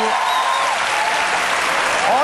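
Studio audience applauding steadily.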